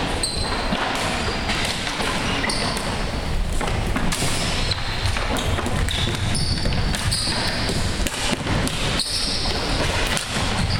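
Floor hockey in play on a hardwood gym floor: sticks and ball knocking and clattering among players running in sneakers, with a steady run of short knocks and squeaks echoing in the large hall.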